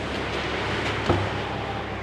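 The boot lid latch of a Mercedes-Benz CLA 180 releasing with a single clunk about a second in as the lid swings open, over a steady low hum.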